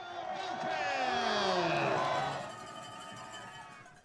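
Stadium crowd cheering and shouting after a touchdown, swelling for a couple of seconds and then fading, with long drawn-out shouts among the voices.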